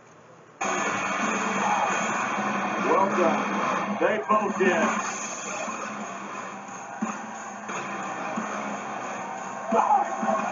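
Television sound cutting in suddenly about half a second in: music with voices over it, heard from across the room.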